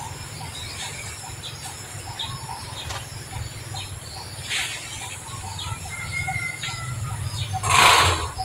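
Small birds chirping intermittently in the background over a steady low hum, with a short two-note whistle about six seconds in. A brief, louder burst of noise comes just before the end.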